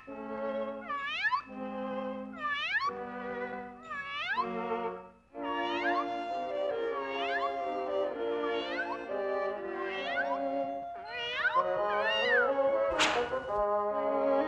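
A cartoon kitten meowing over and over, about one meow every second and a half, over an orchestral cartoon score. A single sharp hit sounds near the end.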